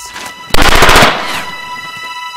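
A short burst of rapid automatic gunfire starting about half a second in and lasting about half a second, then trailing off, over a steady held tone of music.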